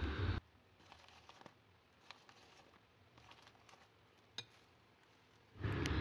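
Mostly near silence: a brief faint crinkle of the plastic flour bag at the very start, then a single faint click about four seconds in.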